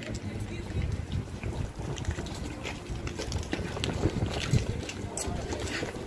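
Wind buffeting a phone microphone as a low, irregular rumble, with indistinct voices in the background.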